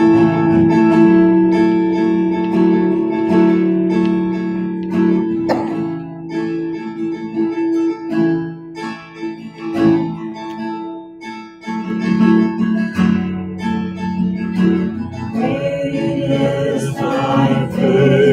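Acoustic guitar strummed in steady chords, leading a hymn, with singing voices coming in about fifteen seconds in.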